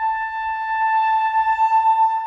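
A single high note held steadily on a wind instrument in a live chamber-ensemble performance of contemporary music, its loudness wavering near the end.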